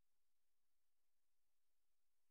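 Near silence: a faint, even hiss with a faint low hum underneath.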